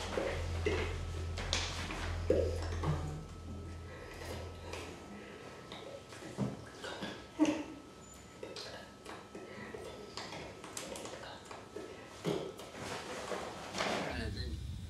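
Scattered soft hand and clothing noises and faint vocal sounds from a person signing in sign language, over a low hum that stops about five seconds in.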